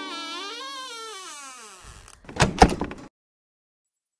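A drawn-out door creak, its pitch wavering and sliding downward, then two heavy bangs close together as the door slams, cut off to sudden silence.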